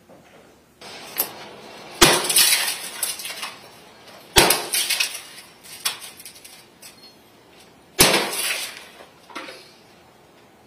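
A bat smashing a flat-screen TV: three hard blows about two, four and a half and eight seconds in, each followed by a crackle of breaking glass and falling pieces, with a few lighter knocks in between.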